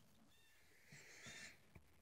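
Near silence, with faint slurping of a calf drinking milk from a plastic bucket about a second in.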